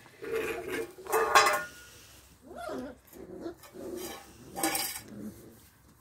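Stainless steel food bowl being pushed and knocked about on paving stones by puppies, clattering and scraping loudly twice, about a second in and near the end. Small puppy vocal sounds come in between.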